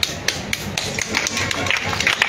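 Scattered hand claps from a small seated audience: a handful of sharp claps at irregular intervals over faint background noise.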